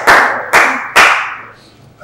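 Brief applause: a few loud claps about half a second apart, dying away after the first second or so.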